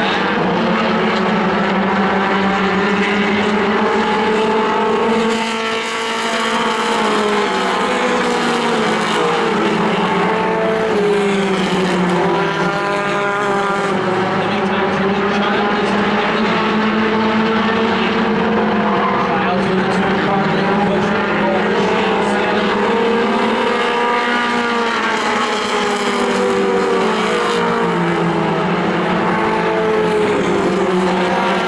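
A pack of mini stock race cars running at racing speed, several engines heard at once. Their pitch rises and falls in slow swells as the cars accelerate and lift around the oval.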